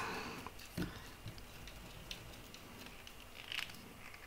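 A few faint clicks and scrapes of a hex key turning the clamping screws of a plastic pulley, tightening it onto metal conduit. The clearest click comes about a second in and another near the end.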